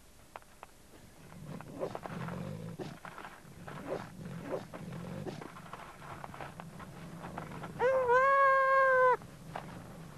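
A goat under attack by Tibetan wild dogs: scuffling on loose stones with low growls, then about eight seconds in the goat gives one loud, long, steady distress bleat lasting just over a second.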